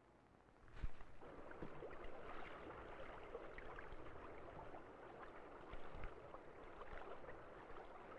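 Quiet, steady rushing of running stream water, starting just under a second in with a sharp knock.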